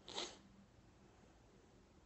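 A single brief rushing noise, about a quarter of a second long, just after the start; otherwise near silence.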